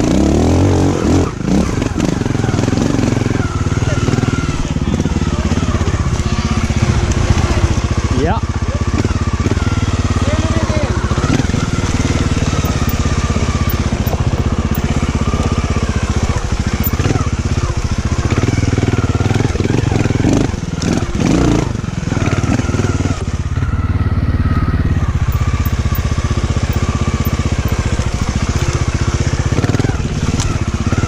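Trials motorcycle engine running at low revs close to the helmet microphone, with small rises and falls of throttle as the bike picks its way over rocks and roots. A few sharp knocks come about two-thirds of the way through.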